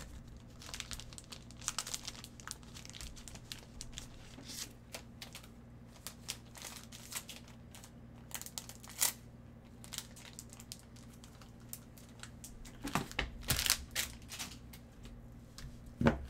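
Plastic crinkling and rustling with scattered light clicks as trading cards and their plastic sleeves and holders are handled, growing denser and louder near the end. A faint steady low hum lies underneath.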